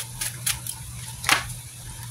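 Tarot cards being handled: a few brief, soft flicks over a low, steady hum.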